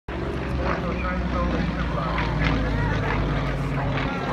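Aerobatic plane's engine drone overhead, a steady low hum, with people talking over it.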